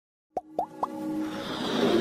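Animated logo intro sting: three quick plops, each rising in pitch, a quarter second apart, followed by a swelling build-up of music and whoosh that grows steadily louder.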